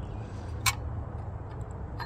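A single sharp click about two-thirds of a second in, as the diesel's injection pump drive gear is worked by hand, over a low steady background rumble.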